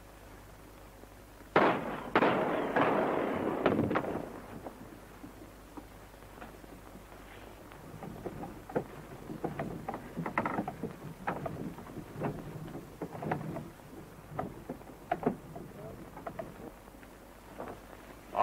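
A sudden loud burst about a second and a half in, then a couple of seconds of noisy commotion, then scattered knocks and thumps over a low murmur of movement, as in a scuffle among men.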